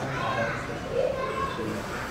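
Indistinct murmur of several people talking quietly at once in a room, with no clear words.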